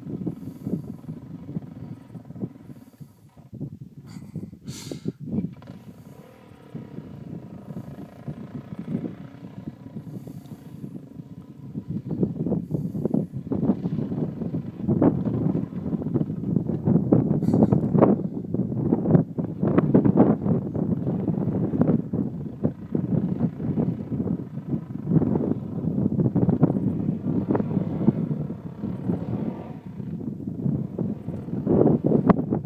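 Dirt bike engine revving unevenly as it climbs a steep, rough single-track hill, its sound growing louder about twelve seconds in.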